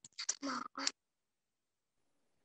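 A short, quiet stretch of speech in the first second, then dead silence, with the call audio cut out entirely.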